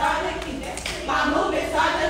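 Hand claps with a voice over them.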